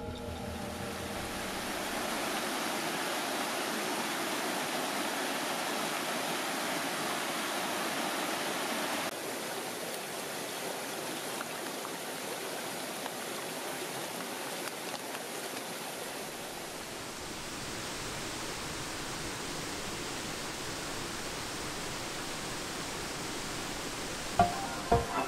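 Mountain stream rushing steadily, a continuous even hiss of water with no other events. Its tone and level shift slightly about nine seconds in and again after about seventeen seconds.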